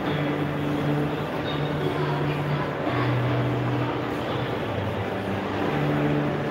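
Indoor shopping-mall ambience: a steady wash of distant voices and bustle, with low held tones underneath that step to a new pitch every second or so.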